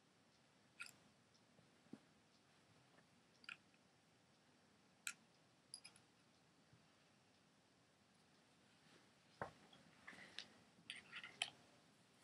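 Near silence broken by faint, scattered clicks of small parts of a paintball marker being handled and twisted by hand, with a short run of clicks in the last few seconds.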